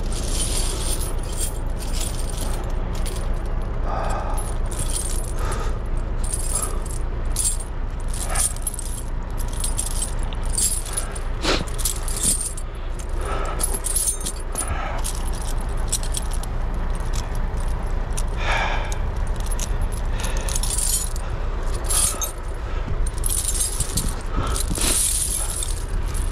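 Steel truck tire chains clinking and jingling as they are handled and spread out on snow, in many irregular bursts of metal-on-metal rattling, over a steady low rumble.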